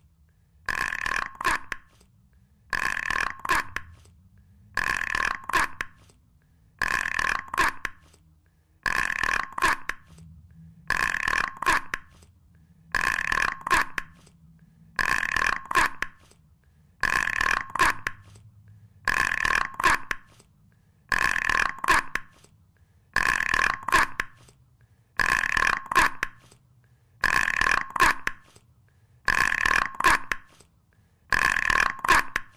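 A steady-pitched sound about a second long, repeated evenly every two seconds like a loop, with near quiet between repeats.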